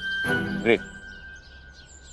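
Soft background music with a long held note under one short spoken word, with faint bird chirps in the quieter second half.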